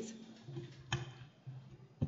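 Sheets of paper being handled on a table close to a desk microphone, with a sharp click about a second in and a few fainter ticks.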